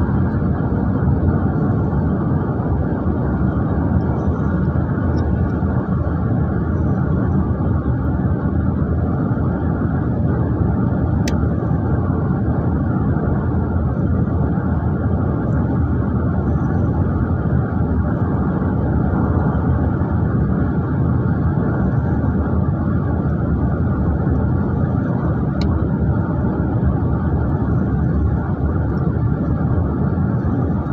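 Steady rumble of road and engine noise heard inside a moving car's cabin, with no rise or fall in level.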